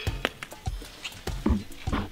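A stone knocked and tapped against the top tube of a Trek Marlin mountain bike that is covered in 3M paint-protection film: several short, sharp clicks spread through the two seconds.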